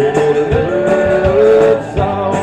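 Live country-rock band playing an instrumental break: a lead guitar holds and bends long notes over drums and strummed guitars.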